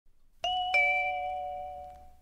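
Two-note descending electronic chime, a 'ding-dong' of a higher then a lower tone about a third of a second apart, both ringing on and fading away. It is the signal that opens the listening-test announcement.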